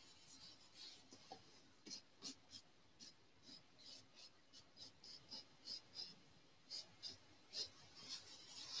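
Faint, short scratchy strokes of a paintbrush working oil paint on canvas, coming irregularly about once or twice a second.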